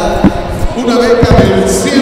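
A man talking, with a few dull low thumps about a quarter second in and again around a second and a quarter in.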